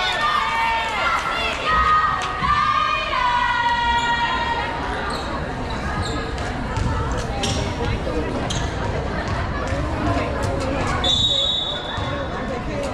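Girls' volleyball team shouting and cheering together in a gym in the first few seconds, then repeated knocks of the ball and players' shoes on the hardwood court. A short, steady, high whistle sounds about a second before the end.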